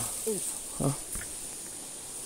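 Steady high-pitched drone of forest insects, with two short spoken syllables in the first second.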